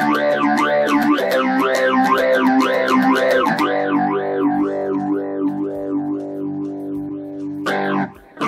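Electric guitar chords played through the TASCAM DP-24/32 Portastudio's phaser effect, with a fast, even sweeping whoosh about two to three times a second. A chord is strummed for a few beats, then one is left ringing and fading from about three and a half seconds in, until a fresh strum near the end.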